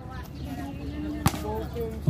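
A basketball bouncing once on the hard outdoor court, a single sharp knock about a second in, under faint men's voices.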